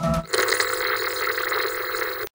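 The last notes of a short organ jingle end, and a fraction of a second in, a steady hiss of TV-style static takes over as a glitch sound effect.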